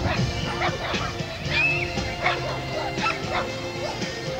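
A dog barking repeatedly in short, high yips, with music playing underneath.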